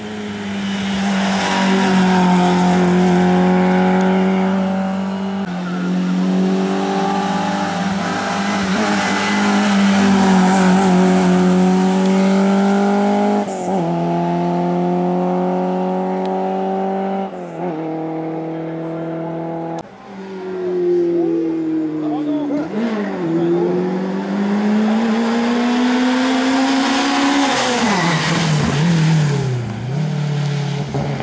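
Competition hatchback engines at full throttle up a hill-climb course, each rev rising then dropping sharply at gear changes several times. A second car takes over about twenty seconds in, its engine climbing in pitch for several seconds before falling away near the end.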